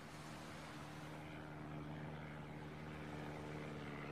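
A faint, steady engine drone that slowly grows louder.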